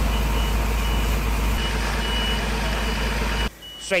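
On-scene sound at a night-time building fire: a loud, steady rushing noise with a high electronic beeper sounding in short repeated beeps. The noise drops off sharply near the end while the beeping goes on.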